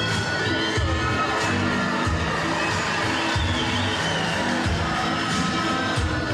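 Music with a repeating bass pattern plays while a crowd cheers and shouts over it.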